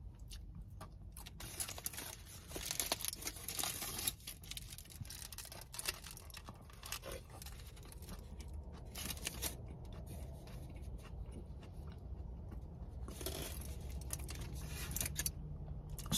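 Aluminium foil burger wrapper crinkling and rustling in handling, in several bursts, the longest in the first few seconds, with quiet chewing in between.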